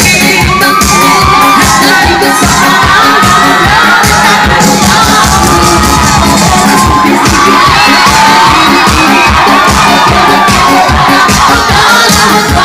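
Live dance music on an electronic keyboard with a steady, loud beat, with a crowd of children cheering and shouting over it.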